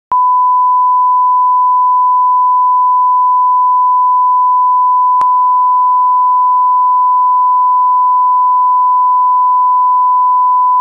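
Broadcast line-up test tone of the bars-and-tone kind: a single steady pitch at the 1 kHz reference, loud and unwavering, with a faint click about five seconds in.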